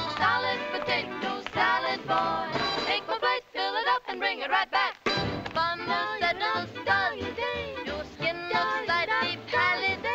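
Three women singing a fast, upbeat song together over band accompaniment, in quick short phrases; about halfway through the notes turn short and clipped, with brief gaps between them.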